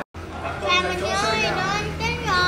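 A young girl's high-pitched voice talking, after a sudden drop-out at the very start, over a steady low hum.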